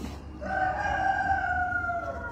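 A rooster crowing: one long call starting about half a second in, its pitch slowly falling.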